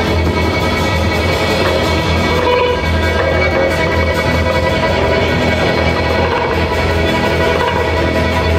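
Live band playing the instrumental opening of a song, with a steady low bass line underneath.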